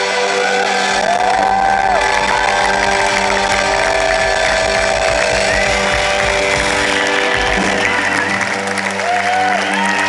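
Rock band playing live through a concert-hall PA, heard from the audience: held chords and drones with sliding notes on top. The deep bass drops away in the last couple of seconds.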